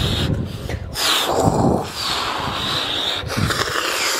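Close rustling and handling noise on a handheld camera's microphone, with a breathy, scraping quality, as a baby is lifted and carried against the holder's shirt.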